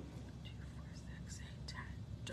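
A woman whispering softly under her breath, counting small ring stitch markers one by one.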